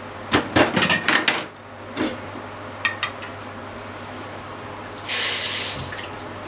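A plastic grater being handled against a ceramic bowl: a quick run of clattering knocks and scrapes at the start, two single knocks a little later, then one short hissing scrape near the end as the grater is laid across the bowl.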